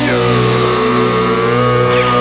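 Loud distorted electric guitars holding the final notes of a rock song: a note dives in pitch at the start, sustains with an engine-like tone, and falls away near the end, over a steady low chord.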